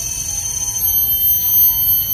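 A steady, high-pitched whine that holds one pitch throughout, over a low rumble.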